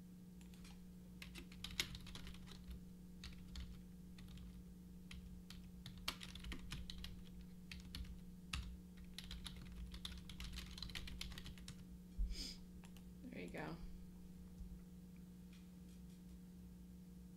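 Typing on a computer keyboard: irregular runs of key clicks that stop about two seconds before the end, over a steady low electrical hum.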